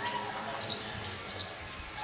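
Footsteps on a concrete floor: a few soft thuds over low background noise.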